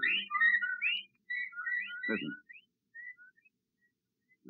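Sound effect of a chorus of whippoorwills calling together: many short, rising whistled calls overlapping, thinning out and fading toward the end.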